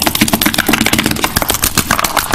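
Hands clapping in a quick, dense run of sharp claps and taps, many a second, with no pause.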